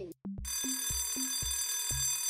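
Alarm-clock bell ringing, a steady shrill ring that starts about a quarter second in and marks the quiz timer running out, over background music with a steady beat.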